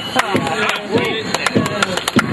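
Hand claps, a quick uneven run of sharp claps several times a second, with voices calling out in rising-and-falling tones among them.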